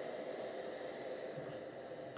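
Faint, steady hiss of steam from a Black & Decker Stowaway SW101 travel steam iron held aloft, letting out the last of its water as steam.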